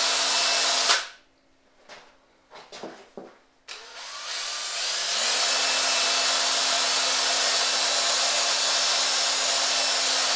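Cordless drill spinning a rotor of eight small flashlights at high speed, with a steady whir. About a second in it stops, a few faint clicks follow, then it starts again with a rising whine and settles back to a steady high-speed run.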